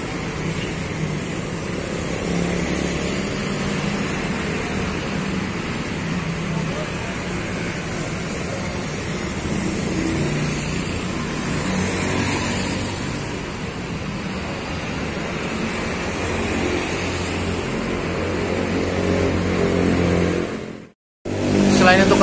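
Diesel engine of a stopped Royal Safari coach bus idling at the kerb, a steady low drone, with street traffic around it. The sound cuts off for a moment about a second before the end.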